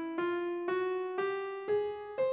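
Piano notes playing the ascending scale 499 (Ionaptian) one note at a time, about two notes a second. The E above middle C rings into the start, then F, F-sharp, G and A-flat follow, each a small step higher.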